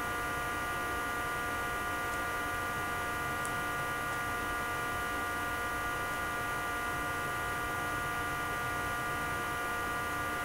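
Steady electrical hum with hiss: several fixed tones held unchanged, like mains hum or electrical interference in the recording, with a faint tick about three and a half seconds in.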